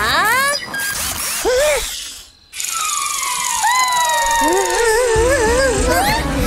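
Cartoon soundtrack music and sound effects: short swooping tones at the start and a brief lull near the middle. Then a long falling whistle-like tone with wavering tones over it, and a bass line coming in near the end.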